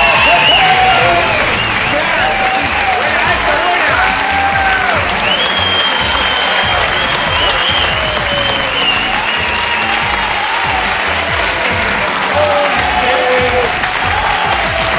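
Studio audience and contestants applauding and cheering, with shouting voices over background music, celebrating a correct final answer.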